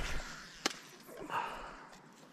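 A cast with a light baitcasting rod and reel: a sharp click a little over half a second in, then a brief soft hiss as line runs off the spool, ending with the small lure landing in the river.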